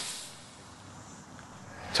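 Faint, steady outdoor background hiss with no distinct event, easing slightly in the first half second.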